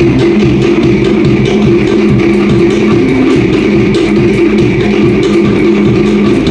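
Live Cook Islands dance music: a drum ensemble playing a steady beat with strummed string instruments over it.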